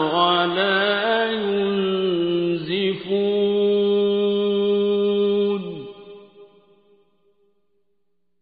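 A male reciter chanting the Quran in the ornamented mujawwad style. The solo voice winds through melismatic pitch turns, then holds one long steady note that falls away about six seconds in.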